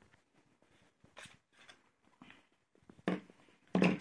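Faint scrapes and rustles as a Kizlyar souvenir dagger is drawn from its leather-covered scabbard with metal fittings. There are a few soft short noises early on and a louder short sound or two near the end.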